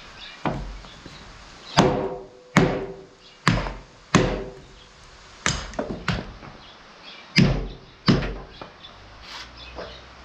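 Hammer blows on a steel bolt set through a wooden wagon bunk and stringer, about nine strikes at an uneven pace, some with a short metallic ring: the bolt is being driven out of hardwood it fits tightly.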